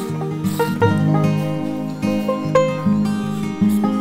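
Background music played on plucked string instruments in a country style, a steady run of picked notes.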